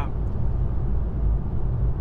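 Steady low road and tyre rumble inside the cabin of a moving Volvo EX30 electric car.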